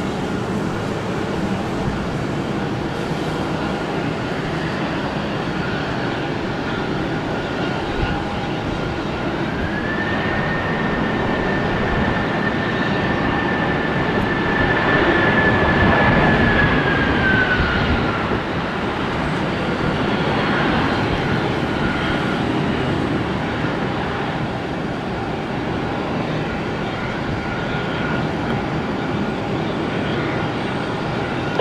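Airbus A330 jet engines after landing, during rollout and slowing on the runway: a steady jet noise. A whine rises about a third of the way in, holds for several seconds and falls away past the middle.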